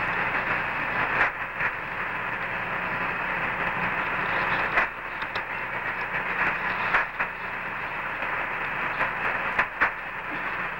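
Steady, thin hiss of radio static on an open Apollo 11 space-to-ground communication channel, broken by a few sharp clicks.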